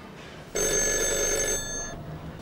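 Telephone ringing: one ring with several steady tones starts suddenly about half a second in, lasts about a second, then fades out.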